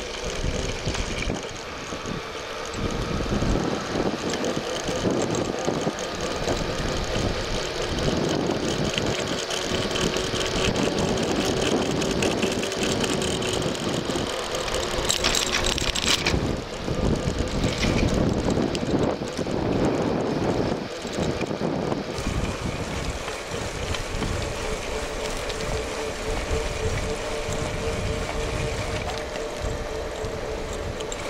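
Wind buffeting the microphone of a camera riding along on a moving bicycle, with steady road and tyre rumble and a faint hum underneath. About halfway through there is a brief louder rush of noise.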